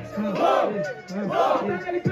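Rap battle crowd shouting together, two loud shouts about a second apart.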